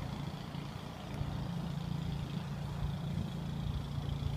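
Steady low hum of an idling car engine, with faint outdoor background noise.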